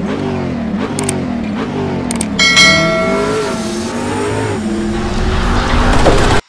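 Engine sound effect, revving up and down again and again and growing loudest near the end. A couple of sharp clicks come about one and two seconds in, followed by a short bell-like ding.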